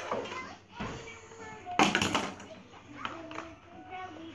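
Plastic toy railway pieces being handled and fitted together, with a few knocks and a short clatter about two seconds in, under a child's quiet voice.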